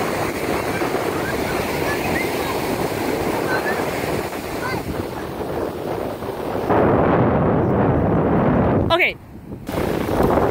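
Ocean surf washing onto the beach, with wind rushing across the microphone. It swells louder for a couple of seconds near the end, then cuts off abruptly.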